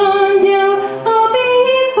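A woman singing a Czech Christmas carol into a microphone, holding long notes with a step up in pitch partway through.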